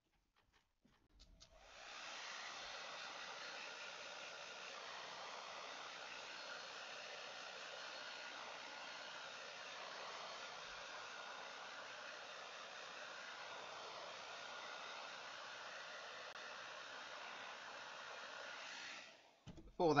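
Handheld hair dryer blowing a steady hiss over a wet watercolour painting to dry the paint. It switches on about a second and a half in and cuts off just before the end.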